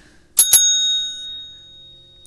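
A small bell struck twice in quick succession, its bright metallic ring fading over about a second and a half.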